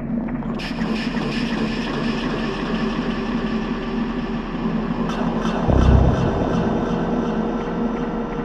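Dark minimal techno in a beatless stretch: sustained droning synth tones under a rushing wash of noise that comes in about half a second in. A single deep boom sounds about six seconds in.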